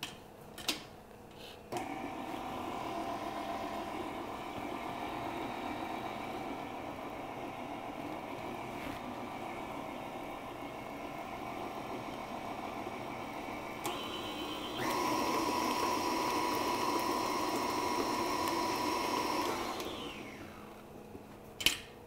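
KitchenAid stand mixer motor running with the flat paddle beater, mixing a wet egg-and-sugar batter. It starts about two seconds in and runs steadily, switches to a higher speed about fifteen seconds in, then slows and stops about twenty seconds in.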